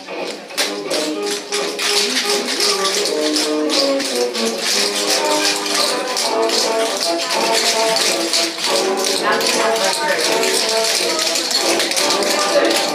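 Upbeat swing music playing over the clicking of a group's tap shoes on a wooden floor; the music comes in about half a second in.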